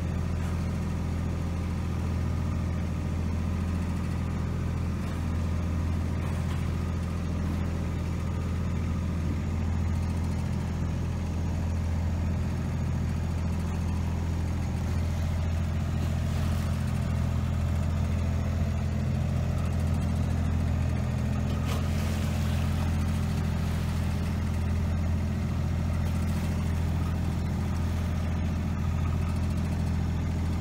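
Boat engine running steadily under way, a low even drone, with a couple of short hissing noises over it about halfway through and again a few seconds later.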